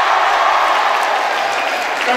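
Audience applauding, the clapping easing off slightly toward the end.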